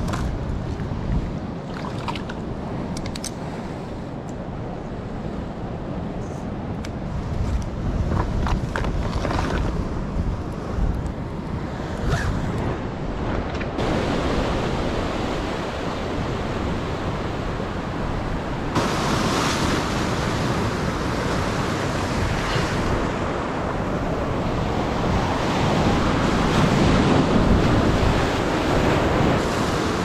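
Ocean surf washing over a rock ledge, a steady rushing with wind on the microphone. Small sharp clicks of tackle being handled come through in the first half.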